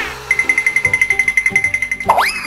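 Background music with a rapid, steady high-pitched trilling beep laid over it, pulsing about a dozen times a second from just after the start.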